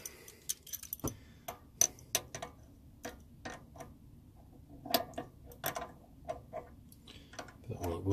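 Irregular sharp metallic clicks and clinks, some in quick clusters, from a ratchet spanner and an adjustable spanner working two nuts jammed together on a mini lathe's tool-post stud.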